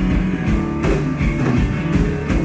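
Live rock band playing, with drum kit, electric guitar and keyboards; no vocal line in this stretch.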